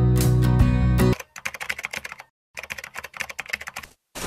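A sustained music chord ends about a second in, then two quick runs of rapid typing clicks follow with a short pause between them: a keyboard-typing sound effect as on-screen text is typed out.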